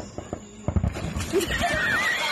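Dull thuds of a person clambering onto an inflatable vinyl pool float, then, about one and a half seconds in, a splash as she tips off it into the pool, with a high, wavering squeal over the splash.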